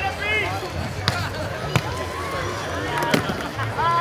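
Beach volleyball rally: sharp slaps of hands striking the ball, several over a few seconds, the loudest about three seconds in, amid players' shouted calls and crowd voices.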